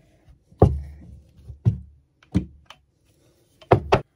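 Hand hex-die lug crimping tool squeezing a copper lug onto 4/0 gauge battery cable: about five sharp, irregular clunks as the handles are worked and the die compresses the lug, the loudest about half a second in.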